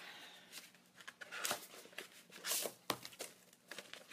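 Packaging being opened by hand: faint, intermittent crinkling and rustling, with a couple of sharp clicks.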